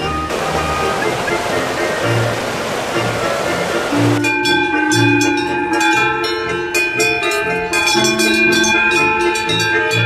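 Swiss Ländler folk music with a steady bass line plays throughout, over rushing water noise for the first four seconds. From about four seconds in, a cowbell clanks and rings repeatedly as the cow wearing it rubs its head against a pine tree.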